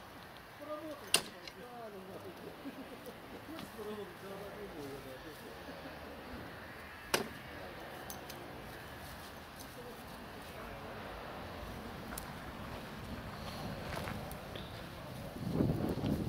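Rustling of dry grass and leaf litter as the ground is picked through by hand, with two sharp clicks, one about a second in and one about seven seconds in. Faint talk in the background.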